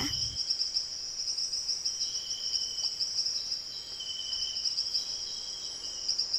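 Rainforest insect chorus: a steady high-pitched drone, with shorter, lower trills from other insects coming and going every second or so.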